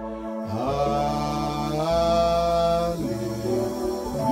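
Worship music on an electronic keyboard: long sustained chords that change about half a second in, again just before two seconds and at three seconds, some notes sliding up into each new chord.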